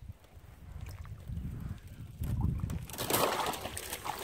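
Water sloshing around wader-clad legs as a person wades in a shallow pond, with a louder splash about three seconds in.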